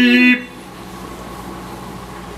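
A man's voiced "beep", a held horn-like tone at a steady pitch, made in play when a toddler presses his button; it cuts off about a third of a second in, leaving quiet room tone.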